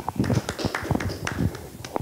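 Live handheld microphone being handed from one person to another, picking up a string of handling thumps and knocks.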